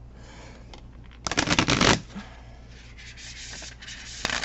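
Riffle shuffle of a new Inner Star Oracle deck with stiff, thick card stock that still needs breaking in. A fast rattle of cards interleaving starts about a second in and lasts under a second. A softer rustle follows near the end as the halves are bridged together.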